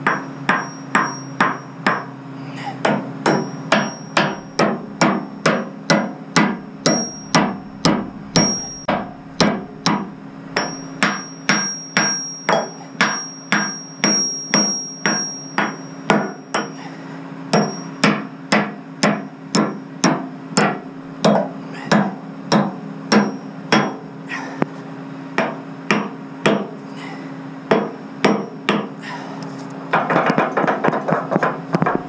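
A hand hammer repeatedly striking a steel pin on a lowboy trailer's neck, driving it into place. Sharp metallic blows come at a steady pace of about one to two a second, with a few short pauses, over a steady low hum.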